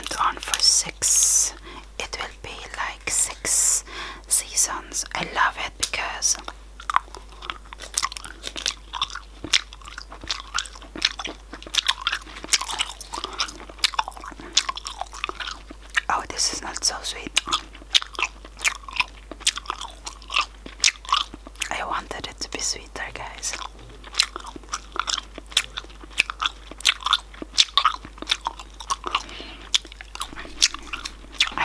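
Close-miked gum chewing: wet mouth clicks and smacks, several a second, without a break.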